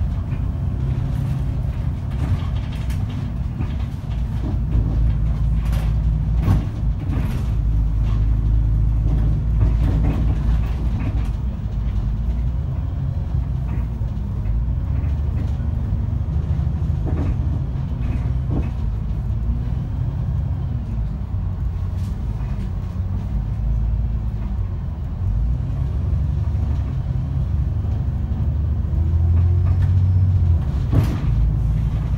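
VDL DB300 double-decker bus driving in traffic, heard from inside: a steady low engine drone that rises and falls with the driving, with scattered short clicks and rattles from the body. The engine grows louder near the end.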